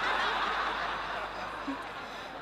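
Audience laughing, a crowd's laughter that peaks at the start and slowly dies away.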